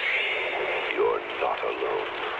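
Film dialogue: a voice speaking in a horror-film clip, sounding thin and tinny, as if through a radio or old tape.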